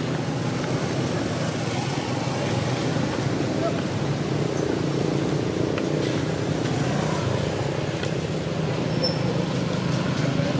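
Steady low background noise with no distinct events.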